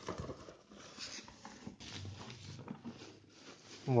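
Thin plastic wrapping rustling and crinkling in irregular, faint bursts as a plastic-bagged helmet is pulled out of a cardboard box.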